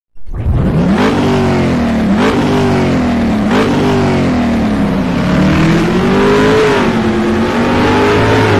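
Engine revving hard as it accelerates through the gears. The pitch climbs and drops sharply at three shifts, about one, two and three and a half seconds in, then rises more slowly and holds high.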